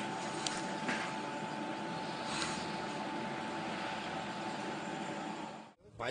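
Dump truck's diesel engine running steadily while pouring out thick black exhaust smoke, heard as a steady noise with a faint hum; it cuts off abruptly just before the end.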